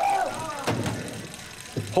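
Indistinct voices with music in the background, opening with a short falling call.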